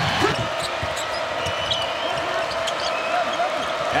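Basketball arena crowd noise, with a basketball bouncing and short sneaker squeaks on the hardwood court.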